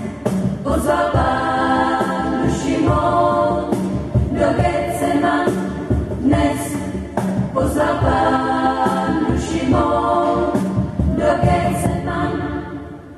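A small church choir (schola) singing a hymn together in sung phrases, the voices carrying in a reverberant church.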